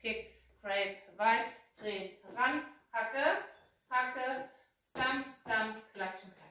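A woman's voice calling out line-dance steps one word at a time, in an even rhythm of about two words a second.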